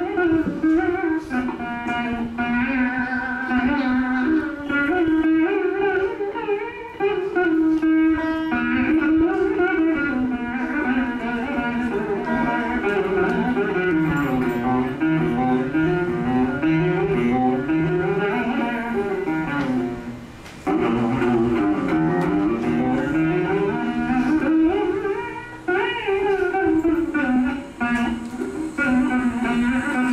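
Saraswati veena plucked in raga Shanmukhapriya, its notes sliding and bending in phrases with brief pauses between them.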